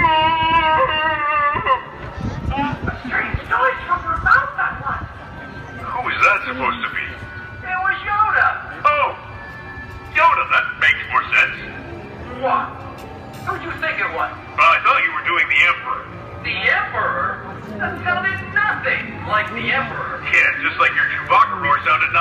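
An impression of Chewbacca's Wookiee roar played over a loudspeaker system: a loud, wavering, warbling howl lasting about two seconds. It is followed by further voice-like growls and noises, with music underneath.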